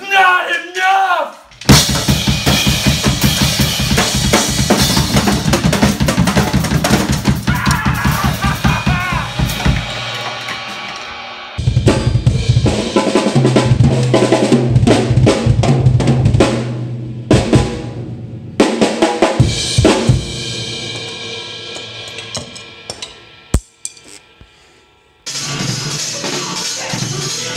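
Acoustic drum kit played fast, with rapid kick-drum strokes under snare and cymbals, across several clips that cut in and out abruptly. A man's voice shouts briefly at the very start.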